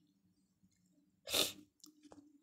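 A single loud, sharp sniff through the nose about a second in, from a woman who is crying.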